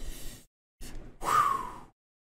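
A man's breathy gasps and exhales: a short burst at the start, a brief one just before a second in, then a longer exhale with a falling voice that cuts off abruptly.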